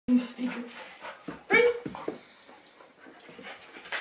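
Dog whining in three short, high notes, then a louder yelp about a second and a half in.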